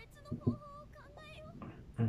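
High-pitched female anime voice speaking a line in Japanese, heard quietly from the episode's soundtrack, with two short low thumps about half a second in.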